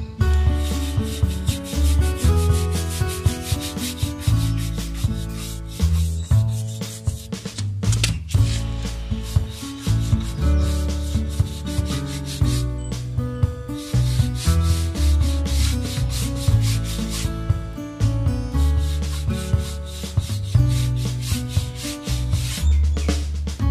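Background music with a bass line and a steady beat, over rapid back-and-forth scrubbing of a stiff shoe brush on a rubber tyre sidewall, buffing shoe polish into the rubber.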